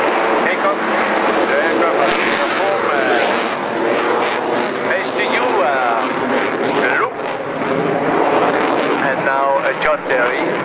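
Dassault Rafale jet fighter flying overhead, its twin Snecma M88-2 turbofan engines running loud and steady. A public-address commentator's voice runs over the jet noise.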